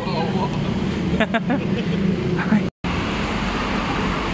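Steady low hum of motor vehicles and traffic, with a few brief voices. About three seconds in the sound cuts off abruptly and gives way to a steady rush of road noise with a deep rumble.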